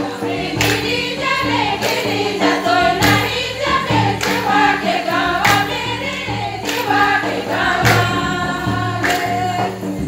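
A group of voices singing a folk dance song together over steady sustained tones, with a percussive beat struck about every second and a quarter.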